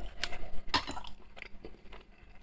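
A few short clicks and knocks from a plastic food tub being handled and a spoon going into it.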